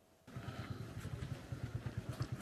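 An engine idling faintly, a steady low pulse of about eight beats a second, starting about a quarter second in.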